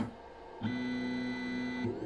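Stepper motors of a 3D printer converted into a pick-and-place machine whining at a steady pitch as the head moves. There is a short lull at the start before the whine comes back, and it drops off again just before the end.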